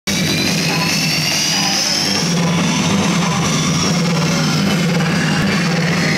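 Psytrance DJ set played loud over a club sound system: a steady bass line under a high synth sweep that rises slowly for a few seconds, then eases back down.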